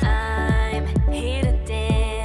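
A worship song's backing track in a sparse, electronic-sounding section. A deep kick drum that drops quickly in pitch hits on a steady beat about twice a second, under bass and synth tones, with an electric guitar picked along.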